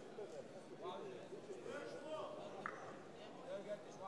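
Indistinct overlapping shouting voices around an MMA cage, the kind of calls that come from the corners and crowd during a fight, with a brief sharp click about two-thirds through.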